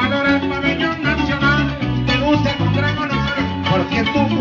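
Venezuelan música llanera played on a llanero harp with plucked-string accompaniment: an instrumental passage with no singing, a quick run of plucked notes over a steadily moving bass line.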